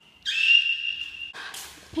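A loud, high whistling tone held at one steady pitch for about a second, followed by a short rush of noise.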